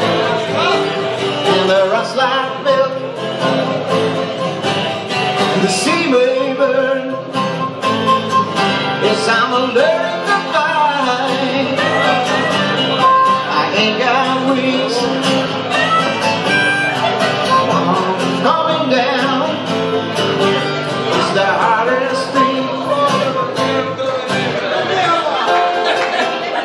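Live acoustic blues: a harmonica wailing with bent notes over two acoustic guitars, with a man singing.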